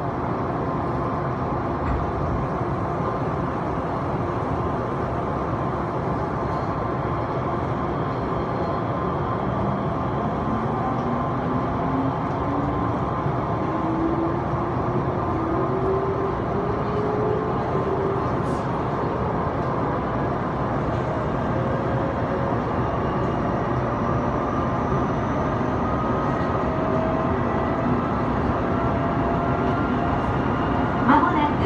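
Odakyu 2000 series electric train heard from inside the carriage, pulling away from a station. Its traction-motor whine climbs steadily in pitch from about a third of the way in as the train gathers speed, over a steady running rumble.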